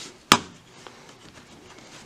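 A single sharp plastic snap about a third of a second in, as a retaining clip lets go while the laptop's bottom shell is pried away from the keyboard deck; after it, only faint handling.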